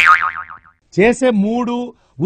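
A cartoon 'boing' sound effect: a warbling twang that fades out within about half a second. About a second in, a person's voice holds one drawn-out sound.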